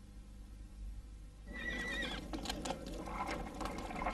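A horse gives a short, high whinny about a second and a half in, followed by scattered light clicks and rustling.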